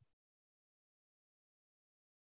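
Near silence: a dead-quiet pause in a video-call audio feed.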